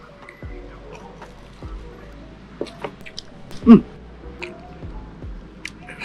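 Lo-fi background music with soft sustained notes and a gentle beat, over faint wet clicks of someone chewing food. A loud, pleased 'mmm' comes about three and a half seconds in.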